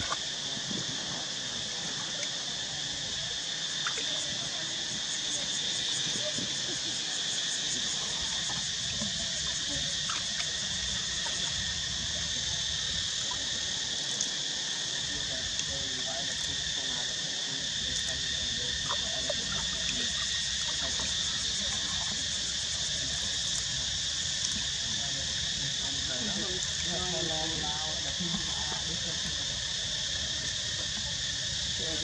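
A steady, high-pitched chorus of insects droning without a break, with faint distant voices under it.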